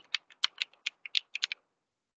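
Computer keyboard typing: about a dozen quick, separate keystrokes over a second and a half, then it stops.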